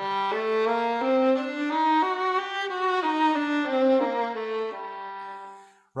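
Solo violin playing a short melodic phrase in maqam Nahawand starting on G: the notes climb step by step and come back down to the starting note, shaped as a melody rather than a straight up-and-down scale. The phrase dies away just before the end.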